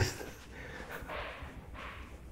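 A laugh dying away, then two faint breathy puffs about a second and just under two seconds in, like quiet chuckles.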